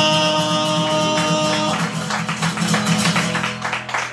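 A man sings one long held note over a strummed acoustic guitar. His voice stops a little under two seconds in, and the rhythmic guitar strumming carries on alone.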